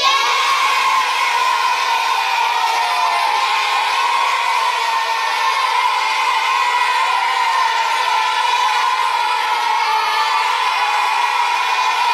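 A large group of children cheering and shouting together: the cheer breaks out suddenly and holds loud and unbroken throughout.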